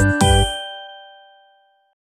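A bell-like chime, struck twice in quick succession, then ringing and fading out over about a second and a half.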